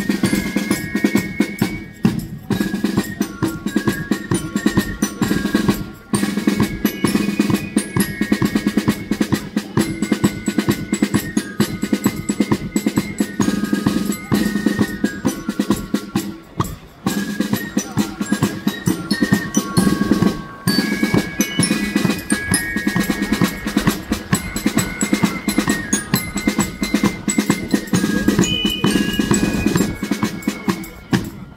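A marching drum and flute corps playing: snare drums and a bass drum beat out a dense march rhythm under a flute melody with bell lyre. The music breaks off briefly four times between phrases.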